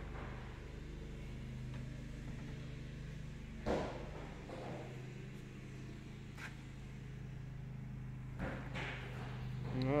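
Steady low mechanical hum, with a short knock about a third of the way in and a faint click later.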